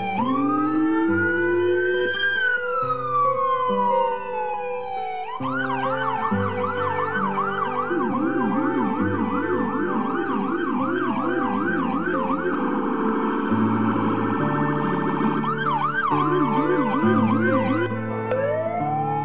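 An electronic emergency-vehicle siren. It starts with a slow rising and falling wail, switches at about five seconds to a fast yelp, goes briefly into an even faster warble, and returns to the yelp near the end. Music with a stepped bass line runs underneath.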